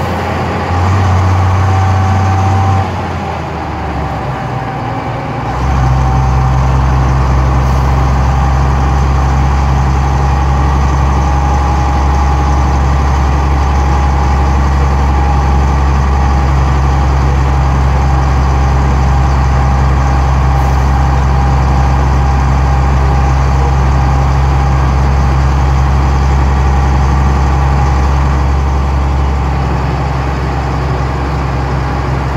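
Gardner 6LXB six-cylinder diesel of a 1980 Bristol VRT double-decker bus running at steady road speed, heard from inside the bus as a loud, steady low drone. About three seconds in the engine note eases and drops for a couple of seconds, then comes back loud and holds steady.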